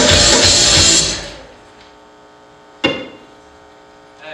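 Loud rock music from an electric guitar and keyboard that stops abruptly about a second in and fades out. Near three seconds in there is one sharp struck sound with a short ring.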